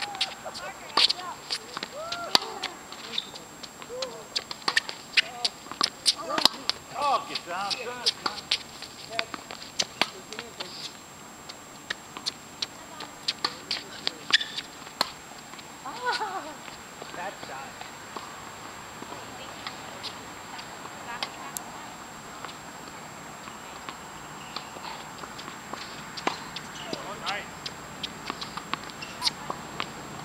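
Tennis rally on an outdoor hard court: sharp knocks of racquet strikes on the ball, ball bounces and footsteps on the court, densest in the first ten seconds and then more scattered.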